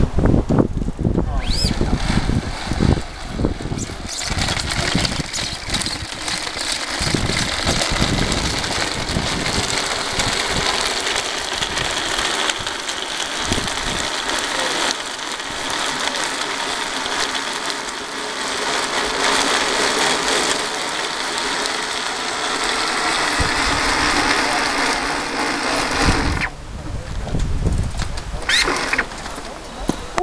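Bicycle-powered blender whirring steadily as it is pedalled, blending a smoothie of fruit chunks and ice. It starts a few seconds in and stops shortly before the end.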